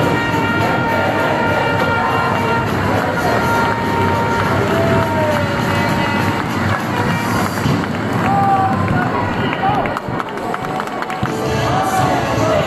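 Music over an ice hockey arena's loudspeakers, mixed with the noise of the crowd and voices. The music holds a few steady notes, with gliding pitches about five seconds in and again near eight to nine seconds.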